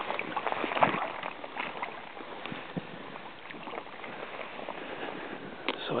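Steady rush of a shallow brook running over a stony bed, with a few brief knocks and rustles of handling, the sharpest about a second in.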